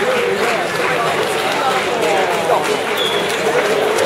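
Crowd chatter: many people talking at once, steady throughout, with no music playing.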